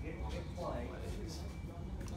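Indistinct conversation among people standing close by, a brief stretch of a voice about half a second in, over a steady low rumble.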